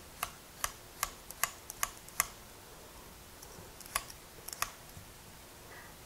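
Metal vegetable peeler scraping the skin off a russet potato in quick strokes, each one a short sharp scrape or click. The strokes come about two and a half a second for the first two seconds, then two more about four seconds in.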